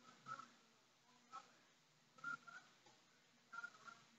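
Near silence: room tone, with a few faint, short, high chirps scattered through it.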